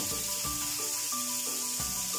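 Whole anchovies frying in oil in a stainless steel pan, with a soft high sizzle, under background music of held chords that change every half-second or so.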